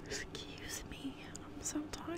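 A woman whispering softly, a few breathy, indistinct words.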